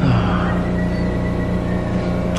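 Steady running hum of a rapid-transit train car heard from inside the car, several even low tones with a faint high whine above them. A low tone slides downward just at the start.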